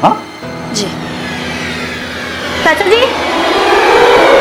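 Suspenseful drama background score: a sustained drone with a swelling rush that builds steadily louder toward the end, leading into a percussion hit.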